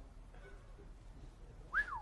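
A quiet pause, then near the end one short whistle from a man that rises briefly and then falls in pitch, a whistle of surprise.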